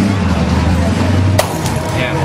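Steady background noise with a low hum, and one sharp click about one and a half seconds in.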